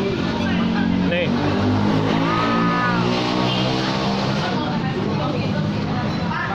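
A motor vehicle engine running close by, steady for several seconds, with a brief higher whine partway through, then fading back near the end.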